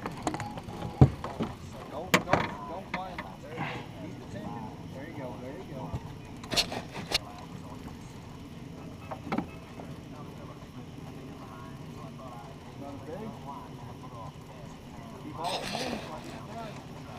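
Faint, indistinct voices with a few sharp knocks scattered through, over a steady low hum.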